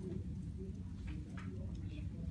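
Steady low room hum with a few faint, scattered taps on a laptop keyboard, most of them in the second half.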